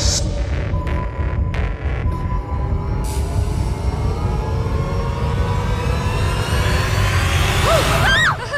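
Horror film background score: a deep low drone under a held high tone, swelling upward in pitch over the last few seconds.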